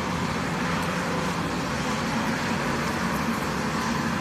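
Steady road traffic noise from passing cars on a city street, picked up by a phone's microphone.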